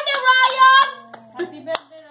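Children's high-pitched voices calling out, then a few scattered hand claps as the voices fall away.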